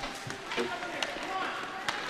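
Ice hockey rink sound during live play: a steady arena hubbub with faint voices, and a few sharp knocks from play on the ice, one about a second in and one near the end.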